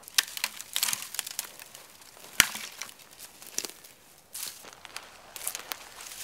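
Evergreen boughs being broken off and gathered by hand: irregular rustling of needles and crackling twigs, with one sharp crack about two and a half seconds in.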